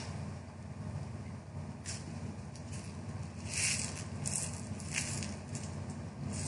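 Hands picking up and handling a small plastic container of sequins: a few faint rustles and rattles, mostly in the second half, over a steady low hum.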